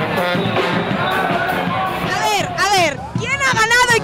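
Music playing over crowd noise. From about halfway through, loud, excited women's voices rise and fall sharply in pitch, laughing and calling out.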